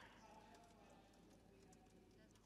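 Near silence: room tone with faint, distant speech.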